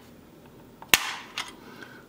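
A sharp plastic snap about a second in, trailing off briefly, then a fainter click: the smart plug's plastic case popping a clip as it is pried apart with a small blade.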